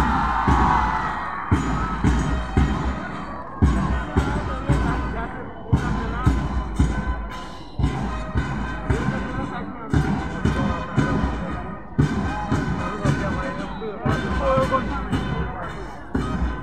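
Marching band drums beating a steady march rhythm, a heavy beat about every two seconds with lighter strokes between, along with band music and the noise of a cheering stadium crowd.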